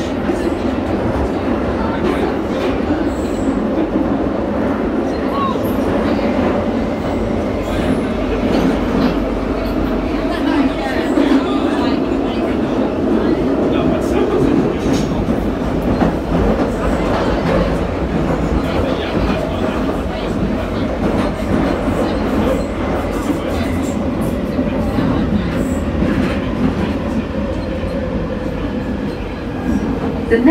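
London Underground Northern line tube train (1995 Stock) running through a deep-level tunnel, heard from inside the carriage: a loud, steady rumble of wheels and motors with a faint whine, easing slightly near the end.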